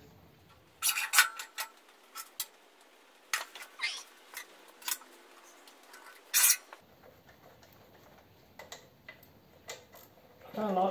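Scattered metallic clinks and light knocks, a few every second or two, from tools and a flathead engine block being handled. The sharpest clinks come about a second in and again a little after six seconds.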